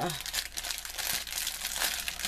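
Clear plastic packaging around a strip of small drill baggies crinkling as it is handled, a continuous dense crackle.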